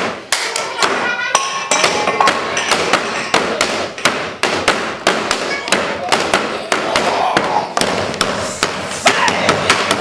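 A rapid run of knocks and thumps, about three or four a second, with brief wordless voice sounds.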